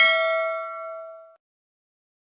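Notification-bell 'ding' sound effect: a single bell strike ringing out and fading away, gone about a second and a half in.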